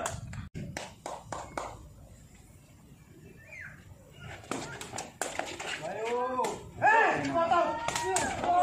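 Sharp kicks of a woven rattan sepak takraw ball during a rally, several short knocks, followed in the last couple of seconds by players and onlookers shouting.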